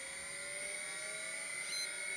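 Faint electrical whir from a light aircraft's instrument panel just powered on, with a thin tone that slowly rises in pitch, and a brief high beep near the end.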